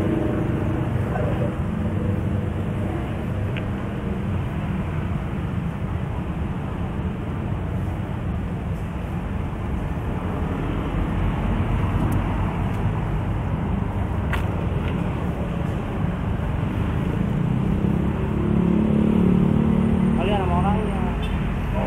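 Steady road traffic noise from passing cars and motorcycles, a continuous low rumble that swells slightly near the end.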